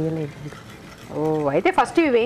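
A person's voice talking, with a break of about a second in the middle.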